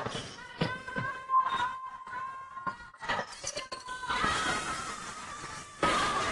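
Basketball game sounds in a sports hall: a ball being dribbled on the court floor with a few knocks, and sneakers squeaking in short high squeals, under background voices.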